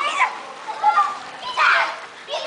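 Children's high-pitched voices calling out over water splashing in a swimming pool.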